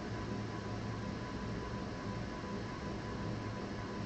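Steady background hiss with a low hum and a faint thin steady tone: the room tone and electrical noise of a microphone left open, with no other sound.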